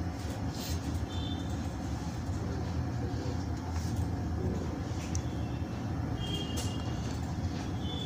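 Steady low background rumble, with a few brief faint high-pitched tones over it.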